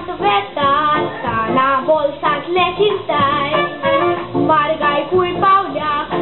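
A boy singing a Konkani cantar solo into a microphone, with guitar accompaniment.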